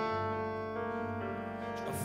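Slow, sustained piano chords in a gentle ballad accompaniment, changing chord a couple of times. A sung syllable comes back in at the very end.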